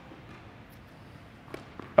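Quiet hall ambience with a couple of faint, distant knocks near the end: a tennis ball struck on an overhead smash and landing on the court.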